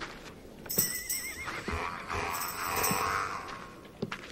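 A horse whinnies: one long, quavering call that starts a little under a second in and dies away near the end.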